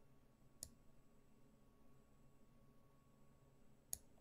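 Two sharp clicks about three seconds apart over near silence: a computer mouse being clicked, selecting a piece on an online chess board.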